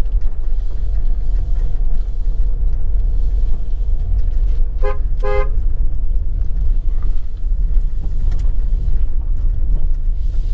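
Steady low rumble of a vehicle driving along a road, with two short horn toots about five seconds in, the second a little longer than the first.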